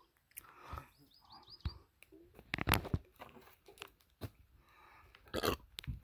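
Footsteps crunching on a rocky, muddy dirt track: irregular short crunches and knocks at an uneven pace.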